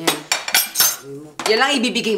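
A quick run of sharp clinks and clatters, like tableware being handled, in the first second or so, then a person starts speaking.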